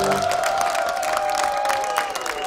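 Studio audience applauding and cheering as a band's song ends: the last chord stops just after the start, and a single held note carries on, sinking in pitch near the end.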